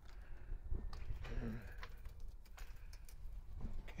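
Footsteps on a paved yard, a few scattered clicks, over a steady low rumble of wind and handling on the microphone, with one brief hesitant 'um' spoken.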